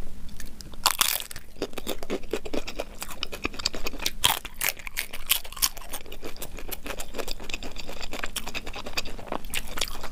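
Close-miked crunching and chewing of crispy fried samosas, a dense run of sharp crackling bites and chews, sped up to double speed.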